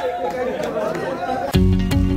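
Excited overlapping chatter of a crowded group of people, then about one and a half seconds in, intro music cuts in suddenly with plucked guitar over a deep bass.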